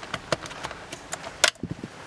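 Scattered sharp clicks and taps of plastic and metal parts being handled at a steering wheel's hub, where the airbag has been taken off, about half a dozen, the loudest about one and a half seconds in.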